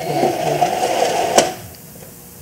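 Synagogue ark curtain sliding shut along its rail, a steady sliding run of about a second and a half that ends in a sharp click as it closes.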